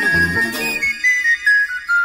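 Instrumental panpipe music. A high pipe melody plays over a pulsing bass and chord backing. About a second in, the backing drops out and a lone pipe runs down a descending scale, one note at a time.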